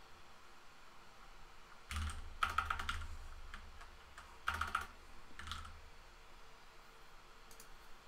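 Typing on a computer keyboard: short bursts of keystrokes about two seconds in, again at four and a half, and once more briefly at five and a half seconds, with quiet between.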